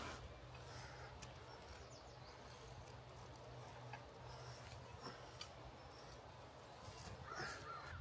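Near silence outdoors, with a few faint, scattered bird calls.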